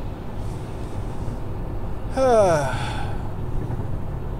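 A man breathes in, then lets out a long voiced sigh that falls in pitch, about two seconds in. A steady low road rumble from a moving car's cabin runs underneath.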